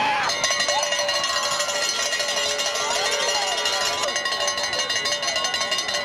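A cowbell rung rapidly and without a break, a fast metallic clatter with a steady ringing pitch, over crowd voices in the stands.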